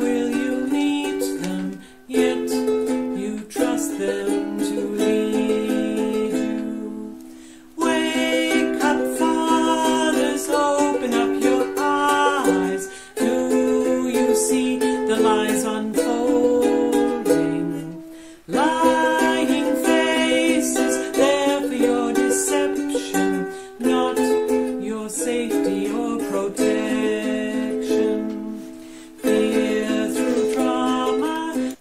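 A woman singing while strumming a ukulele. The music drops out briefly twice between phrases.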